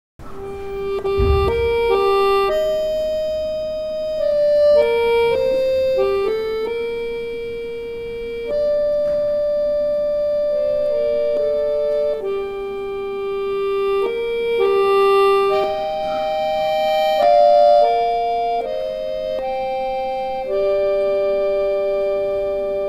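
A bayan, the Russian chromatic button accordion, played solo: the opening of a slow Russian folk-song arrangement, in long held reed chords whose melody moves about once a second and whose loudness swells and eases with the bellows. There is a brief low thump about a second in.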